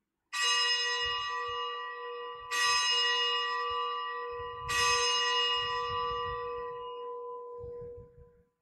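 Consecration bell rung three times, about two seconds apart, each stroke ringing on and slowly fading. It marks the elevation of the consecrated host.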